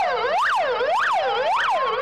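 Emergency vehicle sirens: one in a fast yelp, its pitch rising and falling about twice a second, with a second siren slowly rising in pitch beneath it.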